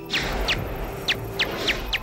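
Daubenton's bat echolocation calls, made audible from ultrasound: a run of short chirps, each falling quickly in pitch, about three a second, as the bat homes in on a moth.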